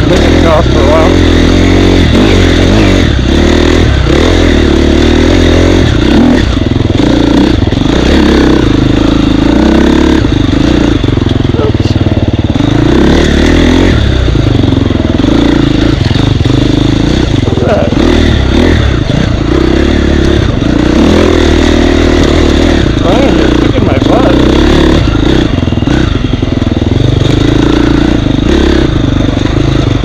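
Husqvarna dirt bike engine, loud and close, revving up and down continuously as the rider works the throttle over rough, rooty single track.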